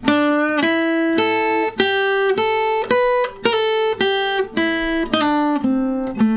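Steel-string acoustic guitar playing a single-note blues lead lick: a run of about fifteen picked notes in triplet groups, mixing minor and major pentatonic, with a string bend, a quick pull-off and a slide.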